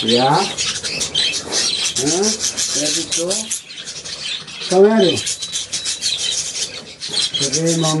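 A flock of pet budgerigars chattering and warbling, a dense scratchy twitter that never stops. A man's low voice breaks in briefly a few times, loudest about five seconds in.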